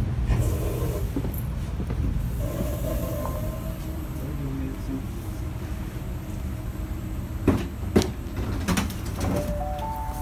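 Steady low rumble inside a GO Transit bilevel commuter train coach as a passenger walks down the stairs to the door. Near the end come two sharp knocks, about half a second apart, as his shoes land on the door sill and step down.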